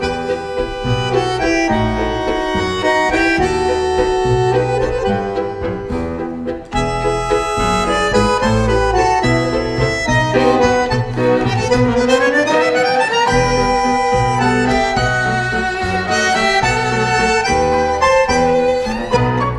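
A tango orchestra playing a tango waltz live: bandoneon leading over violin, piano and double bass. About ten seconds in, the melody climbs in a rising run.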